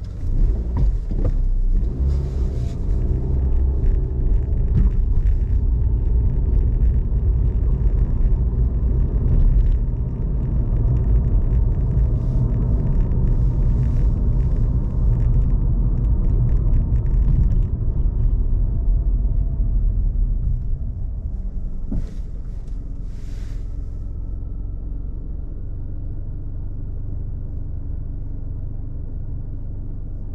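Car road noise and engine rumble heard from inside the cabin while driving on a city street. It swells just after the start as the car pulls away, stays heavy, then eases to a lower, steadier rumble after about twenty seconds as the car slows.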